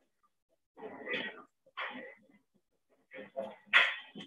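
A string of short, high-pitched animal calls, one or two a second, loudest near the end.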